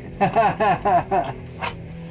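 A man laughing: a quick run of short "ha"s through the first second or so, then dying away.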